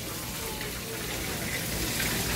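Hot oil sizzling in a frying pan as fish are pan-fried, a steady even hiss.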